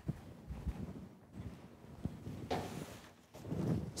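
Faint handling noise of a large folded umbrella: a few light knocks and a short rustle of its fabric about two and a half seconds in, as it is gathered up and threatens to spring open.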